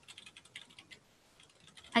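Typing on a computer keyboard: a quick run of keystrokes for about a second, a short pause, then a few more keystrokes near the end.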